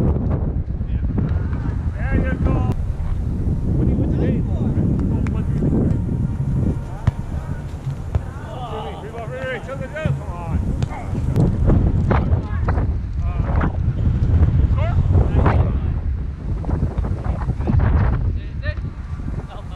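Wind on the microphone, a steady low rumble throughout, with players' voices calling out over it, and a few short sharp knocks in the second half.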